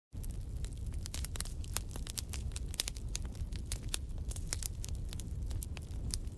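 A steady low rumble with dense, irregular crackling over it, cutting in suddenly from silence: an ambient sound-effect bed for an animation.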